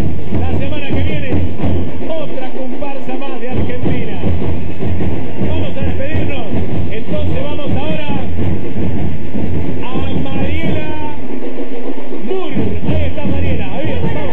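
A batucada drum band playing, led by large rope-tensioned bass drums, with voices singing over it. The deep drums drop out briefly twice, about two seconds in and again near the end.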